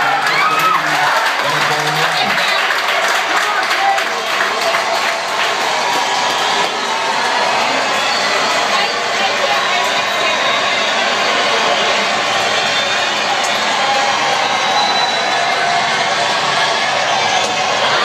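Packed sports-bar crowd cheering and clapping, a dense steady din of many voices and hand claps.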